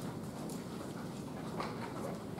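Footsteps and light shuffling in a lecture room: irregular soft knocks over a steady low room noise.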